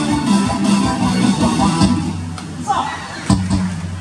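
Ballpark cheering music with voices, and one sharp crack about three seconds in: the bat meeting the ball for a fly ball to center field.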